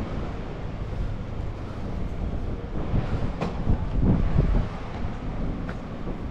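Low, steady rumble of vehicles, with wind buffeting the microphone. A few dull thumps come near the middle.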